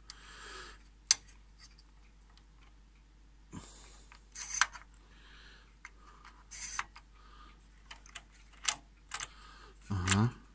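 The head-load mechanism of a Commodore 128D's built-in double-sided 5.25-inch floppy drive being worked by hand: a handful of sharp metal-and-plastic clicks, with soft scraping and rubbing in between. The mechanism is not working properly, and the springs appear to be bent.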